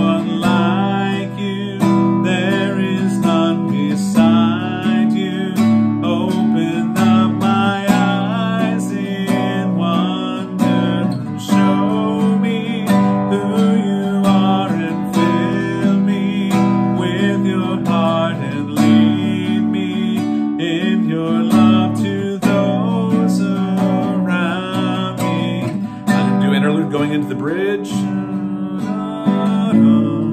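Nylon-string classical guitar strummed in a steady, even chord pattern, with a man's voice singing along.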